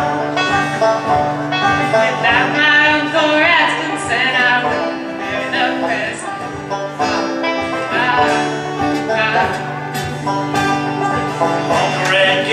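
Banjo picking quick runs of notes over an acoustic guitar in a live bluegrass-style duet, with a steady low note underneath.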